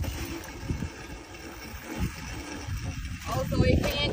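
Small ride-on drift kart rolling and turning on rough asphalt, a steady low rumble of its wheels on the road.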